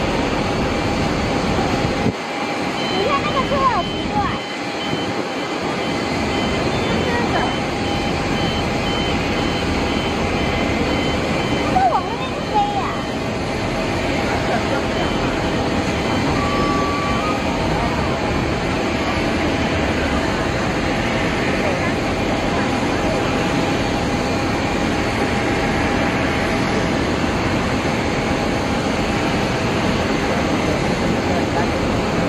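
Airbus A320 jet engines running at taxi power as the airliner rolls along the taxiway: a steady noise with a faint constant whine.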